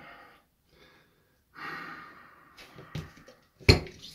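A man breathing out heavily, with a long, noisy exhale about a second and a half in, after drinking six bottles of milk. A single sharp click or knock near the end is the loudest sound.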